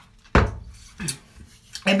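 A drinking tumbler set down on a hard surface with a sharp knock about a third of a second in, followed by a smaller knock about a second in.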